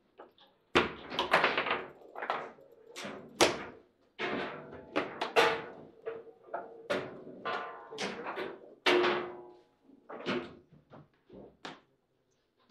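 Foosball table in play: a rapid, irregular run of sharp knocks and thuds from the ball and the rods with their plastic figures striking the table, some with a short ringing tail.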